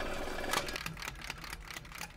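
A quick run of light, irregular clicks, typewriter-like, about six a second, over a hiss that fades out about half a second in.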